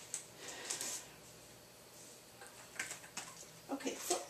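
Faint rustling and a few soft clicks, with quiet room hiss between them.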